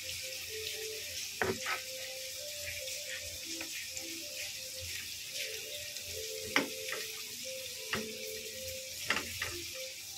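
Food frying in oil in a nonstick pan, a steady sizzle, with several sharp clicks of a metal spatula against the pan, the loudest about two-thirds of the way through.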